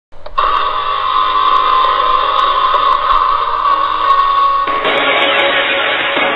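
A steady high-pitched tone over hiss. About four and a half seconds in, it gives way to music.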